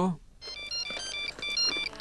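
Mobile phone ringing: an electronic ringtone melody of short beeping notes at changing pitches, starting about half a second in.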